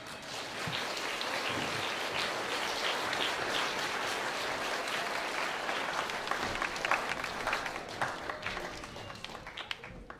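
Audience applauding at the end of a concert band piece. The applause swells within the first second, holds steady, then thins to scattered claps and dies away near the end.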